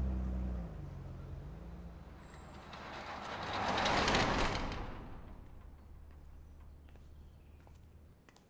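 A vehicle engine's low, steady running hum, with a swell of rushing noise that builds to a peak about four seconds in and fades away. The hum cuts off suddenly at the end.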